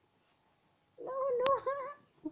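A dog whining: a high, wavering whine that starts about halfway through and lasts about a second, with a sharp click in the middle of it.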